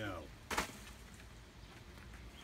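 A single sharp knock about half a second in, just after a short spoken word; otherwise only faint background.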